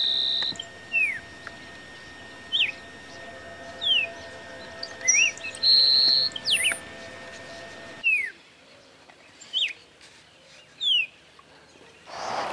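Grassland sparrow singing from a post. Each song is a couple of thin, very high notes followed by a dry, buzzy, insect-like trill, heard at the start and again about six seconds in. Short falling chirps come in between.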